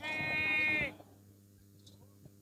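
A single loud bleat from small livestock, lasting just under a second near the start. It holds a steady pitch and dips slightly as it ends.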